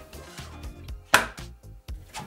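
A sharp click about a second in, and a fainter one near the end, as a flexible steel build plate is slid into its guides and seated on a 3D printer's magnetic bed.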